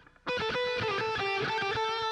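Electric guitar playing a quick run of picked single notes high on the B string, around the 12th fret, starting after a brief pause.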